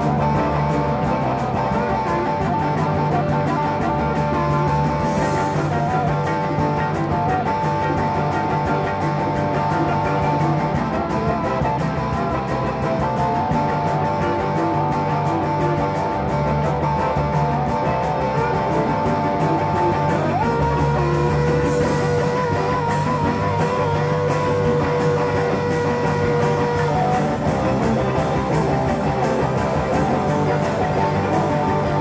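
Live rock-and-roll band playing an instrumental break, with electric guitar, bass and drums. Long held high lead notes run over it, and about two-thirds of the way through they shift to a lower held note that wavers in pitch.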